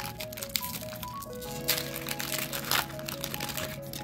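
A foil booster-pack wrapper crinkling and tearing as it is ripped open by hand, loudest about halfway through, over steady background music.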